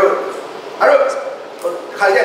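A man speaking in short phrases with pauses between, a room's reverberation audible in the gaps.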